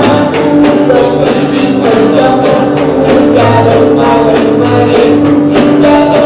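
Live folk ensemble of voices with acoustic guitars and violins performing a traditional Otomí song, over a steady rhythmic beat.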